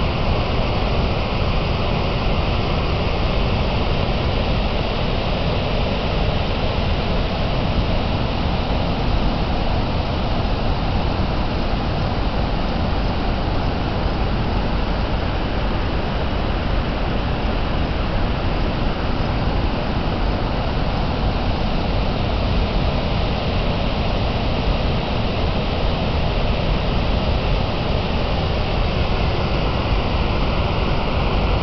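Steady, unbroken rush of high, fast-flowing floodwater on the river below the dam.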